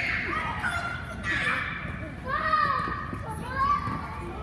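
Children shouting and calling out during a futsal game: about four short, high-pitched shouts roughly a second apart.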